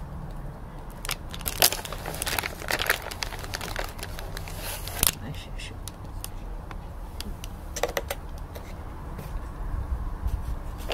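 Handling noise of gummy candy blocks being set onto a paper candy house on a paper plate: light crinkling with scattered sharp clicks, bunched in the first few seconds, with one strong click about halfway through and a few more near the end.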